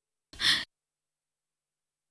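A woman's single short, breathy sigh, about a third of a second long, shortly after the start.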